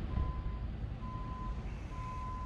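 A vehicle's reversing alarm sounding a single steady high tone in even beeps, about one a second, over a low rumble of traffic.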